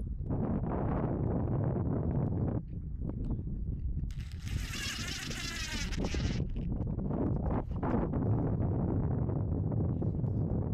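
A cordless DeWalt driver whirring for about two seconds, about four seconds in, as it drives a screw into a new wooden hull plank. Wind noise on the microphone runs under it.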